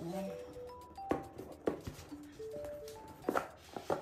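Background music: a simple melody of short notes at changing pitches, with a few sharp taps from hands handling the cardboard iPad box.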